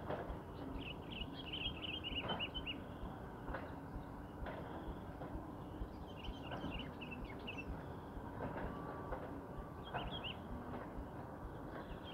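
Faint birds chirping in short bursts, three times, over a low steady background with a few soft clicks.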